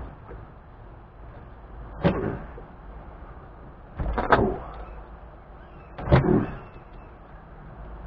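A small hand tool prying and scraping at wood in a porch board joint, loosening a caulked-in thin plywood shim. Three short scraping knocks come about two seconds apart, the middle one doubled.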